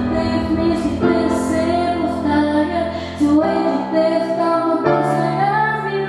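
A girl's solo voice singing a melody into a handheld microphone over amplified instrumental backing, with the chords changing every second or two.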